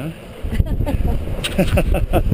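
Wind buffeting the microphone and water rushing along the hull of an Express 27 sailboat under way at about six knots. Short bits of voice come in near the end.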